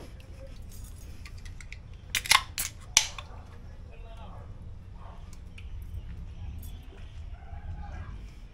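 A few sharp metallic clicks and snaps from aluminium drink cans being handled, about two to three seconds in.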